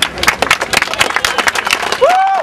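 A crowd applauding: many people clapping their hands in dense, uneven claps, with a voice or two mixed in near the end.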